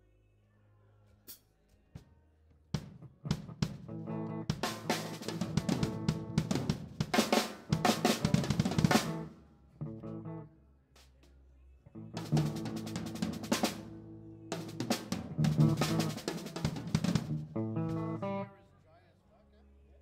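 Live rock band with a drum kit (snare, bass drum and cymbals) and chording instruments, played in loud stop-start stretches: it comes in about three seconds in, breaks off abruptly about halfway with one lone hit, then starts again and cuts off suddenly near the end.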